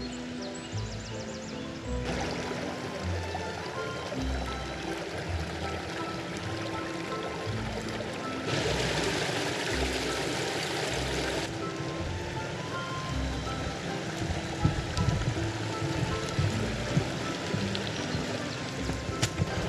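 Background music over a stream rushing through a rocky forest gorge. About halfway through, the water gets much louder for about three seconds as it pours over a small cascade.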